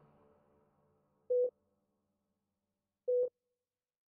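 Two short electronic beeps at the same mid pitch, a little under two seconds apart, with silence between them. They are the last two beats of a three-beep countdown to gunfire.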